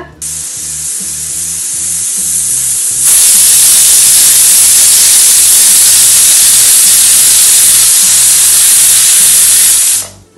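Stovetop pressure cooker whistling: steam hisses out past the weight valve, a sign the cooker has reached full pressure. The hiss builds for about three seconds, then jumps much louder and holds steady before stopping abruptly.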